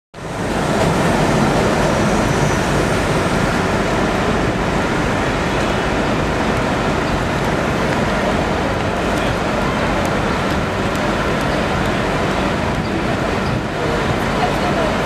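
Steady city road traffic noise, a continuous low rumble of vehicles with no distinct events standing out.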